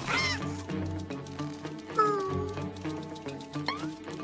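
Background music with a fast ticking beat, over which the animated robot WALL-E makes short electronic warbling calls: one near the start, a falling one about two seconds in, and a quick rising chirp near the end.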